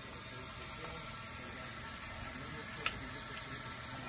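Water from a salon shampoo-bowl hand sprayer running steadily over hair and into the basin, rinsing out hair lightener. A single brief click comes a little under three seconds in.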